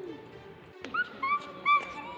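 A click, then three short, high-pitched yips in quick succession, over faint background music.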